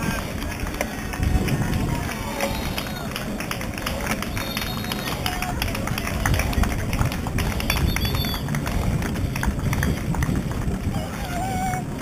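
Wind rushing over the microphone of a camera mounted on a moving road bike's handlebars, with road rumble and rattling ticks from the bike and mount.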